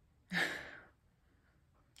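A single breath through the nose, about half a second long and fading out, as a scented wax melt is held up to be smelled.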